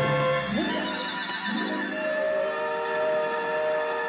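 Orchestral film score: sustained chords with two rising runs, about half a second and a second and a half in.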